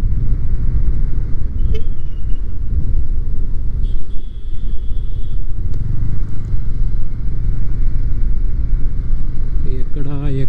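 Triumph Speed 400 motorcycle's single-cylinder engine running at road speed, buried in a loud, steady wind rumble on the on-bike microphone. A brief high-pitched tone sounds about four seconds in.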